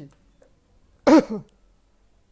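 A man clearing his throat once, a short voiced 'ahem' in two quick parts about a second in.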